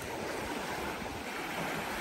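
Small waves washing onto a sandy beach, a steady hiss of surf.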